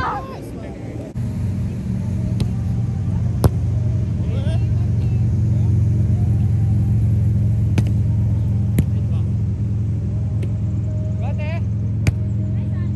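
A steady low engine hum sets in about a second in and stays the loudest sound. Over it come about five sharp hits of a volleyball being struck by hand during a rally.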